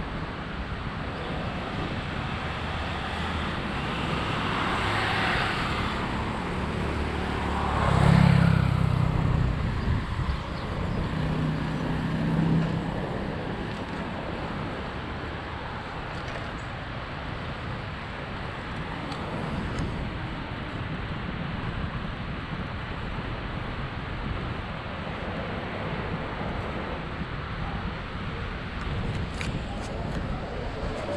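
Cars passing on the road beside the bike lane: one swells and goes by, loudest about eight seconds in, and another follows a few seconds later with a low engine hum. Underneath is a steady rush of wind on the microphone from the moving bicycle.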